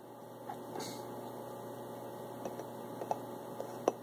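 Steady low electrical hum, with a few faint clicks and one sharper tick near the end.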